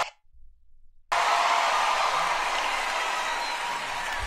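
Large congregation applauding and cheering, starting about a second in after a moment of silence and easing off slightly toward the end.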